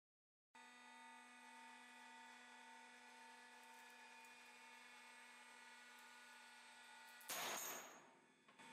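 Faint steady electrical hum made of several steady tones. About seven seconds in, a brief, louder burst of noise cuts across it.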